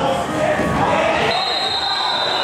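Spectators talking and calling out, echoing in a sports hall, while the ball is kicked and bounces on the hall floor during an indoor football match. A thin, high, steady tone sets in after about a second.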